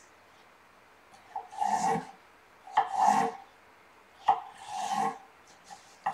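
Kitchen knife slicing an English cucumber lengthwise on a wooden cutting board: three separate cuts, each lasting about half a second, about a second and a half apart.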